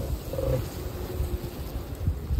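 Honeybees humming faintly in an opened hive as a frame of comb is lifted out, over an uneven low rumble on the microphone.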